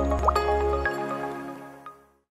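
Short music jingle for a logo ident: layered chiming notes over a low bass, with a few quick rising drop-like blips. The bass stops about a second in and the rest fades away near the end.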